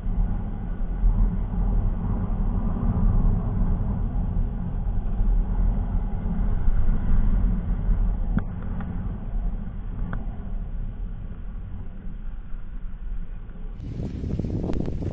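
Steady low rumble of a 100 cc Passion Plus motorcycle riding along at road speed, its engine and the wind blending together, heard muffled through an action camera's waterproof case.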